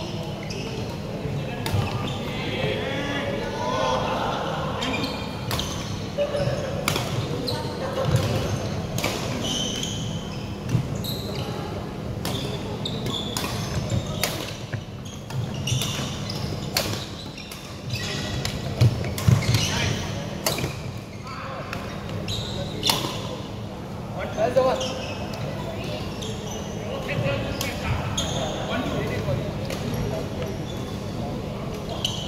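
Badminton rackets striking a shuttlecock during a doubles rally: sharp clicks about once or twice a second, echoing in a large sports hall.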